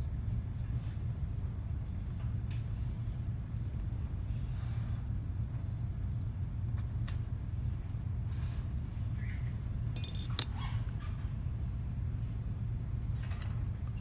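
Steady low hum of room tone, with a few faint light clicks and taps from handling a stone dental cast and a metal wax spatula, the sharpest click about ten seconds in.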